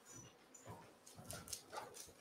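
Near silence: room tone with a few faint clicks and taps.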